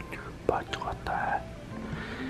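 Quiet speech, with music faintly behind it.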